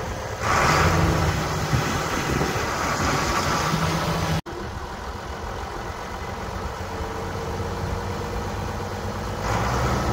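International 1086 tractor's diesel engine idling steadily, louder and rougher over the first four seconds or so, with the sound cutting out for an instant about four and a half seconds in.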